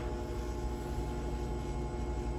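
Steady hum and whir of a forced-air egg incubator's fan motor running, several even tones held unchanged.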